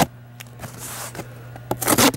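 A fixed-blade knife slicing corrugated cardboard, heard as a short scraping rasp near the end after quieter handling of the box.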